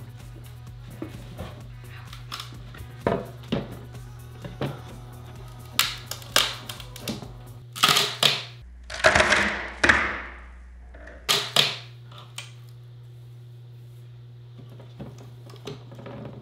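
A wooden drawer face being pried off with a pry bar: scattered knocks and creaks, then a loud ragged cracking about eight to ten seconds in as the wood gives way and the face piece breaks. Background music with a steady bass line plays underneath.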